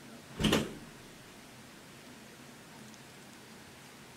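A single short thump about half a second in, over faint steady room hiss.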